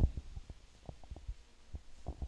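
Handheld microphone being handled as it is passed from one person to another: a run of low thumps and rubbing bumps, loudest at the start.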